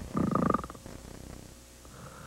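A single rattling snore: a short burst of rapid flutter pulses lasting about half a second, near the start, then dying away.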